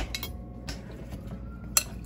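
A metal utensil clinking against a glass mixing bowl of raw dog food: a few light clinks, the sharpest near the end.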